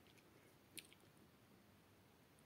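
Near silence: faint soft rustle of hands rubbing a crumbly sellou mixture of toasted flour, honey and butter in a bowl, with one short, quiet tick a little under a second in.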